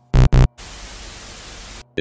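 Two short, loud, buzzy beeps of an emergency broadcast alert, followed by about a second of steady TV-style static hiss that cuts off suddenly.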